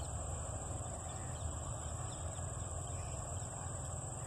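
Low-level outdoor field ambience: a steady, high-pitched insect drone held unbroken, over a low rumble.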